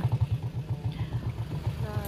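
Motorcycle engine of a tricycle (motorcycle with sidecar) running at low speed, a steady putter of about a dozen beats a second, heard from inside the sidecar.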